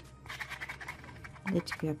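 A small plastic deodorant bottle and its screw cap being handled, giving a faint, scratchy rustle of plastic with small clicks. A voice starts near the end.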